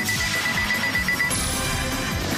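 Soundtrack music with a high, rapidly pulsing electronic beep over it, a sci-fi sound effect that stops a little over a second in.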